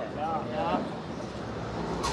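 Faint voice murmuring briefly over a low, steady background hum.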